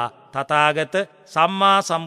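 A Buddhist monk's voice intoning in a slow chant, with long syllables held on a steady pitch.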